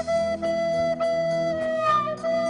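Music: a flute playing a tune that mostly repeats one note, with a brief higher note near the end, over a low accompaniment.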